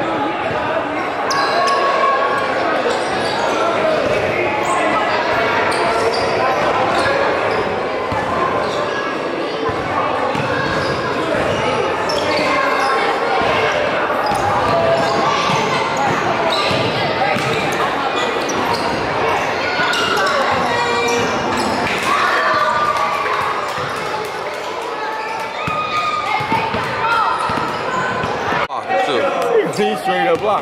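Basketballs bouncing on a hardwood gym floor, with many indistinct voices of players and onlookers echoing in the gym throughout.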